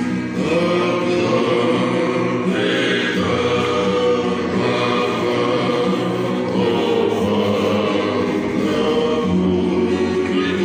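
A group of men singing a Tongan song together in sustained harmony, accompanied by strummed acoustic guitars.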